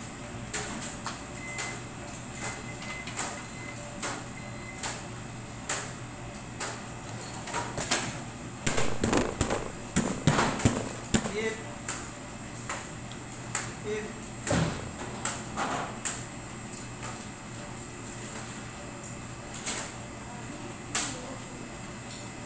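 Scattered short clicks and taps from handling cake-decorating tools and the turntable, over a steady electrical hum; the taps come thicker and louder from about eight to twelve seconds in.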